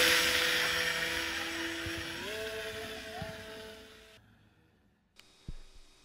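Whine of the Grayson Hobby Microjet V3 electric motor and small propeller on a foam RC biplane as it flies away after launch, fading steadily. The pitch steps up about two seconds in as the throttle is opened. The sound dies out a little after four seconds.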